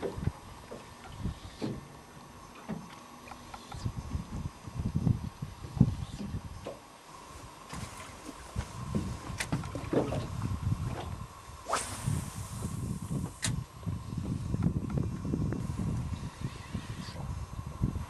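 Wind and water around a small fishing boat, an uneven low rumble, with scattered light knocks and a short high hiss about twelve seconds in.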